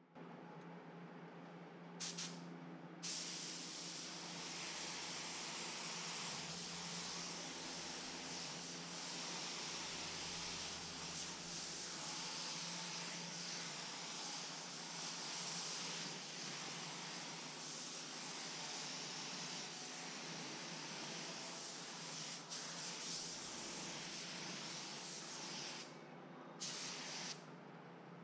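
Atom X20 HVLP spray gun hissing steadily as it lays down a pearl midcoat, the trigger held in long passes. It starts about two or three seconds in and breaks off briefly near the end.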